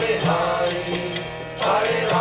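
Outro music: a sung devotional chant in long held notes over instrumental accompaniment, with a new phrase starting near the end.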